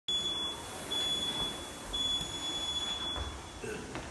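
Gym interval timer beeping a start countdown: three high beeps about a second apart, the last one held for well over a second. A few soft footfalls follow near the end.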